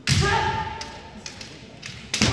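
Kendo attack: a loud stamping thud and bamboo sword (shinai) strike right at the start, with a fighter's kiai shout ringing over it for about half a second. A few lighter clacks of shinai follow later.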